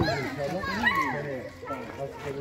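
Children's voices calling out and chattering during a ball game in a schoolyard, with a sharp knock right at the start. The voices drop off after about a second and a half.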